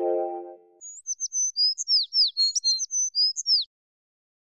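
A music chord rings out and fades in the first second, then a quick run of high bird chirps, each a short falling sweep, starts about a second in and stops abruptly near the end.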